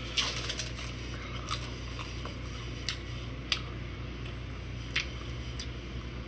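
Plastic wrapper of a Slim Jim meat stick being peeled open by hand: scattered sharp crinkles and crackles, about half a dozen over a few seconds.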